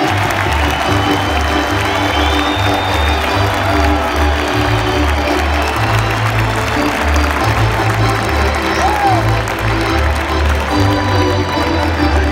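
Arena organ playing a tune over a walking bass line of held low notes, with sustained chords above, against steady crowd applause and chatter.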